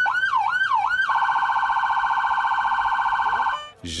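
Police patrol car's electronic siren being worked through its tones: three quick rising-and-falling sweeps, then a rapid warble, cutting off shortly before the end.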